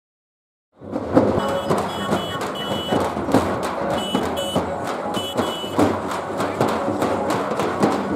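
Several dappu frame drums beaten with sticks in a fast, dense rhythm, starting about a second in. A high steady tone sounds over it in a few short spells.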